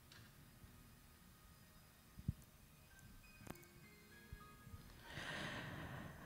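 Near silence: room tone with a few faint clicks, then a soft rustle of microphone handling near the end as a handheld mic is picked up.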